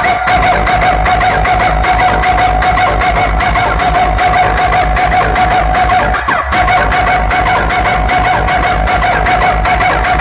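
Loud dance music played through a large DJ speaker rig, with a fast, even bass beat under a steady held high tone.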